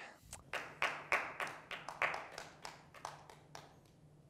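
Slow, sparse clapping by a single pair of hands, about three claps a second, growing weaker and petering out.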